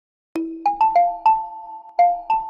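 Short jingle of bright, bell-like struck mallet notes: five quick notes starting about a third of a second in, each ringing on as the next sounds. It is the company's audio logo for its logo animation.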